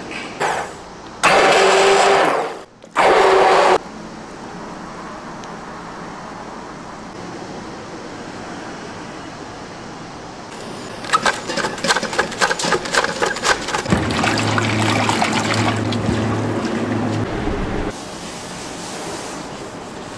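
An immersion blender whirring in two short bursts in a large steel bowl of raw eggs, beating them. Later a cabbage wedge is shredded on a mandoline slicer in a quick run of rasping strokes, followed by a steady low hum for a few seconds.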